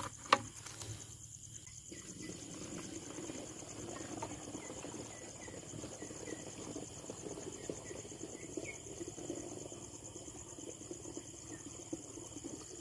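Crickets chirping in a steady night chorus, with one sharp click just after the start and faint low handling noise underneath.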